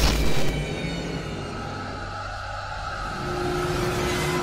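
Horror-trailer sound design: a short loud whoosh-hit at the start, then an ominous low drone of dark score held underneath. A steady single tone joins in about three seconds in.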